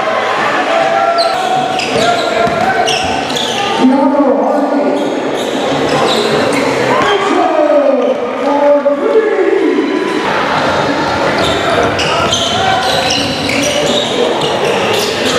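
Background song with a beat and a pitched lead vocal that slides in long glides about halfway through.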